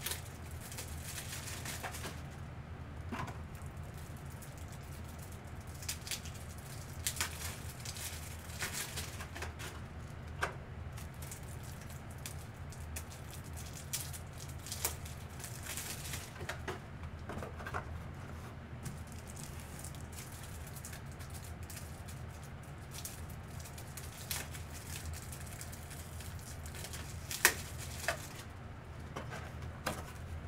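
Scattered light clicks, taps and plastic rustles of rigid plastic card top loaders being handled and stacked on a table, over a steady low hum, with a sharper click near the end.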